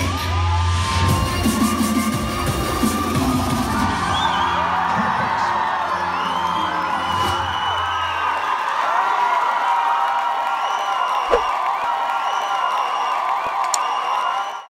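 Hip-hop routine music with a heavy bass, under an audience cheering, screaming and whooping; the bass drops out a little past halfway while the cheering carries on.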